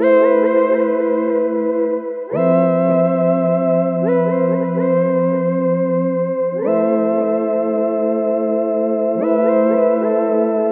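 Yamaha reface DX four-operator FM synthesizer played on its "CloudPad" pad preset: held chords that change three times, with quick runs of notes over them.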